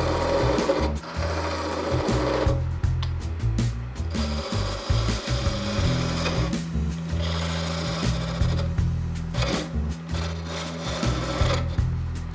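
A skewchigouge cutting a wooden spindle turning on a wood lathe: a scraping, shearing sound of the edge in the wood that comes in stretches of a few seconds with short breaks, over the steady run of the lathe. Background music plays underneath.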